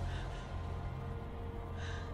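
A low, steady drone of film-score music with a woman's short gasping breaths, one just after the start and another near the end.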